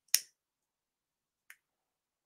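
A single sharp click just after the start, then a much fainter tick about a second and a half later.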